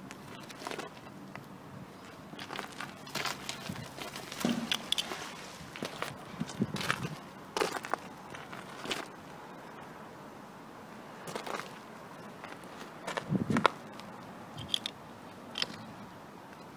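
Irregular scuffs, crunches and clicks of boots moving on gravelly ground and of the magnet-fishing rope being handled, with a quieter stretch in the middle and the loudest scuffs a little past halfway.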